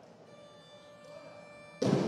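Faint background music, then near the end a sudden loud thud as a loaded barbell with rubber bumper plates is dropped onto the wooden lifting platform after a completed overhead lift.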